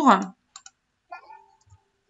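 A spoken word trails off, then a few faint computer mouse clicks as the software is worked, with a short faint hum after the clicks and a soft low knock.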